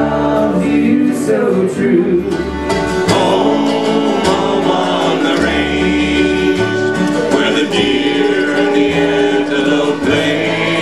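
Old-time string band music: the last bars of a tune on accordion, fiddle, acoustic guitar and upright bass, then about three seconds in a change to a banjo, acoustic guitar and upright bass tune with voices singing.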